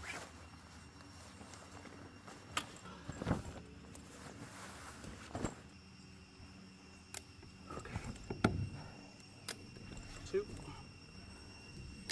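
Aluminium poles and leg fittings of a fabric camping cot clicking and knocking as the frame is put together, with the cloth rustling under handling. A steady high tone comes in about halfway.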